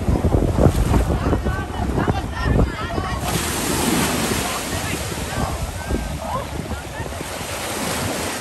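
Ocean surf washing against the rocks, with wind buffeting the microphone and distant voices of a crowd calling and chattering. About three seconds in, the wash swells into a broad, louder hiss that lingers.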